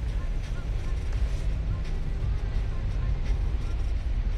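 Road noise inside a moving taxi's cabin: a steady low rumble from the engine and tyres.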